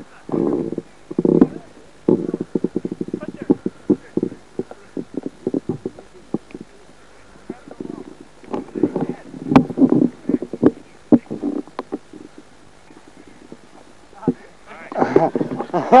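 Indistinct voices talking on and off, mixed with sharp clicks and knocks, then a man laughing near the end.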